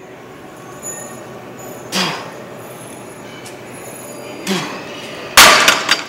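Cable machine in use during straight-bar cable curls: the pulley and weight stack slide and clink, with two short strained grunts about 2 and 4.5 seconds in. A loud metallic clash near the end.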